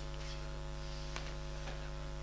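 Steady electrical mains hum from the microphone and amplification chain: a low buzz with a stack of evenly spaced overtones, with one faint click about a second in.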